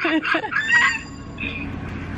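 A woman's burst of laughter in the first second, rapid and choppy, ending on a high drawn-out note, followed by a quieter stretch of low background noise.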